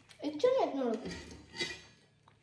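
A person's brief voiced sound falling in pitch, the loudest thing here, followed about a second and a half in by a short clink of dishes or cutlery.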